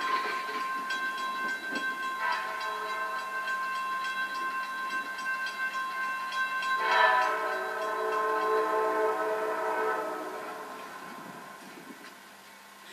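Amtrak diesel locomotive's multi-chime horn sounding in long held blasts as the train approaches, heard played back through a television's speakers in a room. The chord gets fuller about two seconds in and loudest about seven seconds in, then fades away near the end.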